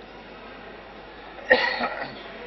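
A person coughing sharply about one and a half seconds in, with a smaller second cough right after, over quiet room background.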